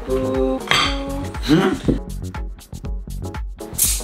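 Glass kombucha bottles clinking against each other and the ice in a glass bowl as one is picked out. Near the end comes a short hiss as the carbonated bottle's cap is twisted open. Background music plays throughout.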